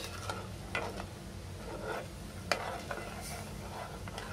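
A metal spoon stirring broken wheat in water inside a pressure cooker, scraping and knocking against the pot a few times, over a steady low hum.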